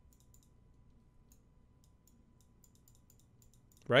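Faint, irregular light clicks and taps of a stylus on a pen tablet during handwriting, coming in short clusters.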